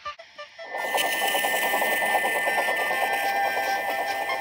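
A steam locomotive whistle blowing on and on without a break, starting about a second in, over the fast whirring rattle of a battery-powered Plarail toy train running on plastic track.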